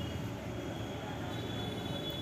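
Steady background rumble with faint thin high tones running through it, with no single event standing out.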